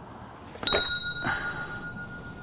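A bright metallic ding, like a small bell, about two thirds of a second in, its ring carrying on steadily, with a faint knock about half a second later.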